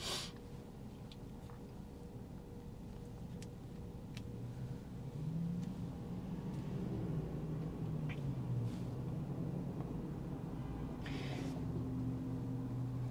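Quiet cabin of a stopped electric car: a low rumble of surrounding traffic, with a low steady hum that comes in about five seconds in, and a few faint ticks.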